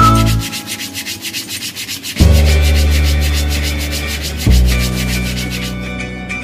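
Emery paper rubbed back and forth by hand over the wooden face of a cricket bat, a quick scratching under background music with a steady fast beat and held bass notes.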